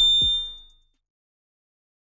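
A bright, high bell-like ding, the notification-bell sound effect of a subscribe-button animation, rings and fades within the first half second. A last low bass-drum hit from the intro beat comes in under it. Both are gone before the first second is out.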